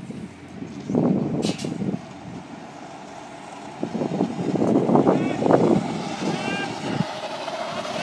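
People talking and laughing in bursts, over a steady background noise.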